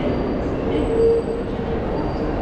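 Steady hubbub of a crowded railway station concourse, echoing in the hall, with a short held tone rising above it about a second in.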